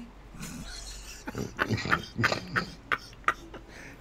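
A person coughing in a run of short bursts, starting about a second in.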